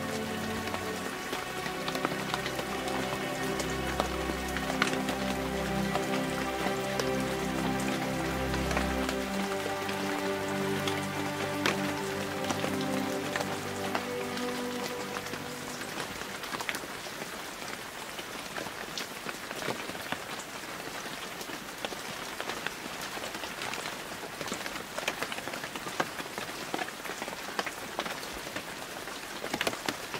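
Steady rain falling, with many small drop hits on a surface. Soft meditation music with low held tones plays under it and fades out about halfway through, leaving only the rain.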